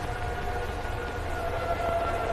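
Air-raid-style siren wail held on steady pitches over a low rumble.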